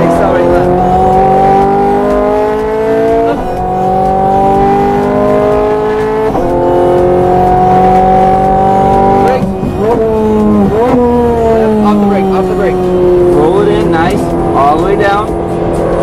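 Ferrari F430 Scuderia's V8 engine, heard from inside the cabin under hard acceleration. It rises in pitch through the gears, with quick upshifts about three and six seconds in. About ten seconds in it breaks into a few short rev blips as the car downshifts under braking, and the revs then fall away before it pulls steadily again.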